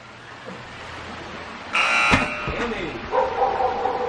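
A small rubber ball lands on the concrete balcony floor with a couple of dull thumps about halfway through, under a short loud cry. Near the end comes a steady, held vocal sound.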